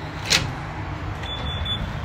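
A sharp click, then about a second later three short high-pitched electronic beeps in quick succession from a door-entry unit at a studio door.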